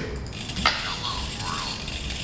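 EZ-Robot JD humanoid robot running a waving action: its servo motors move the arm, with a sharp click about two-thirds of a second in, and a faint, thin synthesized voice says "hello world".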